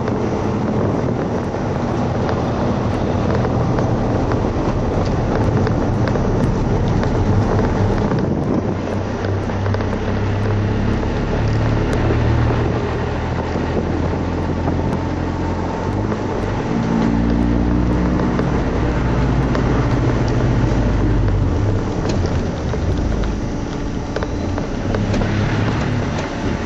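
Audi TT's engine and tyre/road noise heard from inside the cabin while driving on a race circuit, the engine note shifting up and down in pitch several times with throttle and gear changes, with some wind noise.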